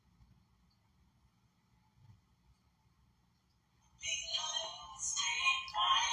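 Near silence, then a song with singing starts playing in the background about four seconds in.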